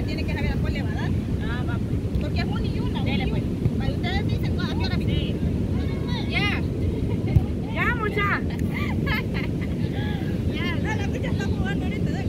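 Steady low rumble of wind on the microphone, with women's voices chattering and calling in the background throughout, none of it clear words. A single brief knock stands out a little past the middle.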